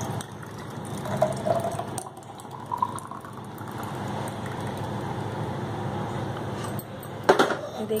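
Steady background hum with faint voices in the distance, and a short clatter about seven seconds in.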